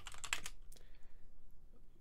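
Typing on a computer keyboard: a quick run of keystrokes in the first second, then it goes quiet.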